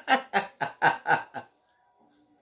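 A man laughing, a run of about six quick pulses at roughly four a second that stops about a second and a half in.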